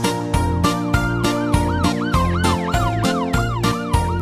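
Upbeat children's song instrumental with a steady drum beat, overlaid from about a second in by a cartoon police-siren effect: a quick rising-and-falling wail repeating about four times a second.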